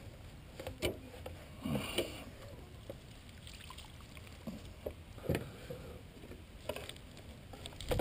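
Landing net and clumps of wet matted grass handled at the waterline beside a boat: light splashing and dripping with a few brief knocks and splashes, against soft water lapping at the hull.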